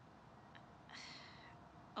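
Near silence, with one faint, brief high-pitched sound about a second in.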